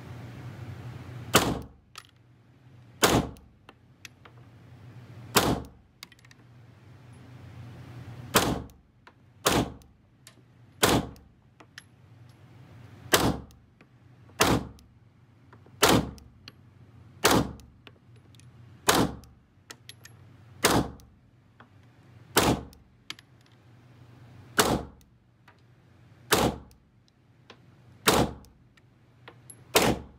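Glock 17 Gen5 9mm pistol firing slow single shots, seventeen in all, one every one to two seconds: a full magazine emptied shot by shot.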